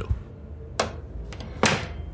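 Door sound effect: two short, sharp sounds a little under a second apart, with a fainter one between them, as a door is opened a crack.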